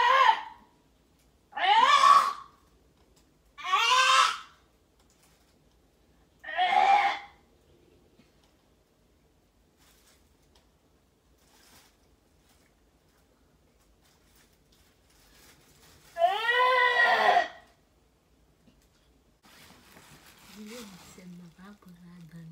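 A woman's high wailing cries, each rising and falling in pitch: four short ones about two seconds apart, then a longer one after a long pause. Faint rustling and a low voice come in near the end.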